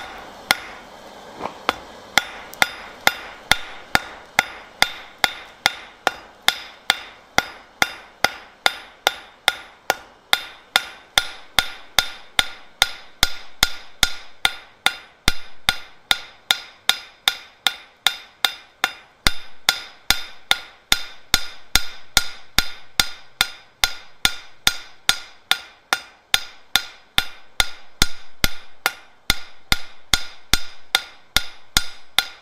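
Hand hammer striking red-hot steel on an anvil in a steady rhythm of about two and a half blows a second, each with a short metallic ring, starting about two seconds in, flattening the end of the bar.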